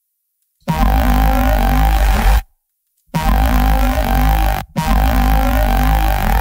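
A bass sample played through a spectral resynthesis plugin with its resynthesis turned on: three sustained bass notes with a deep sub and a bright, noisy, buzzy top, separated by short gaps, the last running past the end.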